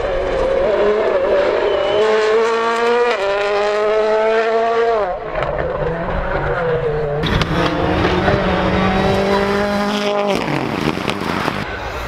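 Rally cars at speed: two passes of hard-driven engines, each note climbing steadily and then dropping sharply as the driver lifts off, the first about five seconds in, the second near the end.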